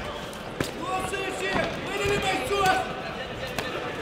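Voices shouting in a large hall during a kickboxing bout, with a couple of sharp impacts from the fighters, one about half a second in and one near the end.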